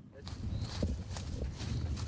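Footsteps on the leaf-covered woodland floor: a few soft crunches over a low rumble.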